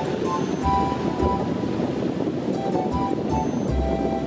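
Ocean surf breaking and washing up a beach, a steady rush, with background music of held notes and a low bass laid over it.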